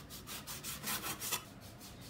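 Chinese cleaver slicing raw pork belly on a wooden chopping board: quick, uneven strokes of the blade through the meat onto the wood, several a second, thinning out near the end.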